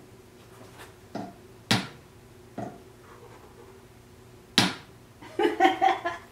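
Small hammer driving wooden pegs into the sole of a boot: separate knocks, two of them sharp (just under two seconds in and just before five seconds) and a couple of lighter taps between.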